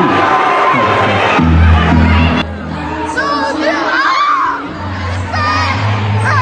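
Auditorium crowd cheering and shouting. About a second and a half in, a bass-heavy music track starts over the sound system, with a singing voice on it.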